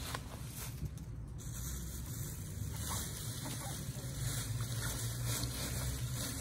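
Faint rustling of dry leaves being tipped from a plastic basket and pushed into a plastic bin bag, over a steady low rumble.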